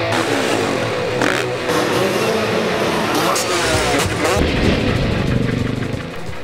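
Rock guitar intro music with a dirt bike engine revving over it; the engine comes up strongly about halfway through.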